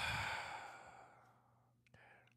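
A person's long, breathy sigh, loudest at first and fading out over about a second and a half.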